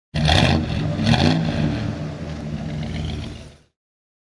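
Car engine revving twice in quick blips, then running on steadily and fading out near the end.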